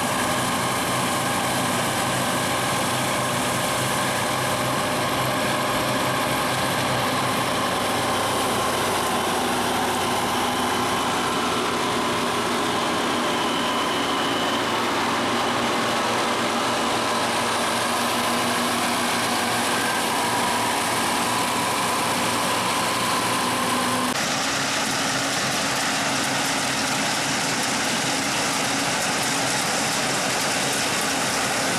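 Bizon Super Z056 combine harvester running under load while harvesting: a steady drone of its diesel engine and threshing machinery, with several steady tones over it. About 24 s in, the tone shifts abruptly.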